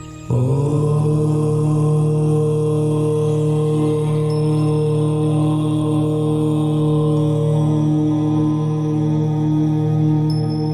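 A deep chanted "Om" begins about a third of a second in and is held as one long, steady tone over soft background music.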